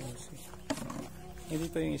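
Voices of people talking a little way off, in short bursts, the clearest phrase near the end, over a faint steady hum.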